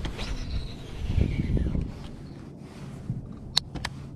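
Baitcasting reel spool whining as line pays out on a cast, the pitch falling as the spool slows. Two sharp clicks follow near the end, over a low steady hum.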